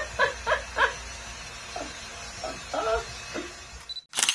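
Women laughing: a quick run of four "ha"s in the first second, then a few more scattered laughs near the end.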